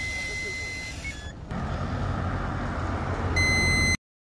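Handheld breathalyzer sounding a steady high electronic tone that ends about a second in with a short two-note beep as the breath sample is taken and analysis starts. A rushing, rumbling noise follows, and near the end the device sounds another steady beep as the reading comes up.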